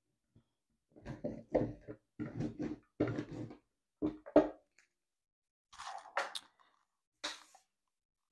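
A hand roller is run back and forth over hot-fix tape laid on a rhinestone template, pressing the hot-fix rhinestones onto the tape's adhesive in a quick series of short rolling strokes. Near the end come two brief rustles of the sheets being handled.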